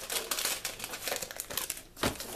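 Plastic film packaging crinkling as it is handled, a dense run of crackles that dies down shortly before the end.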